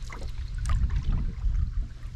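A wooden paddle stroking through the water beside an aluminium canoe, over a steady low rumble of wind on the microphone.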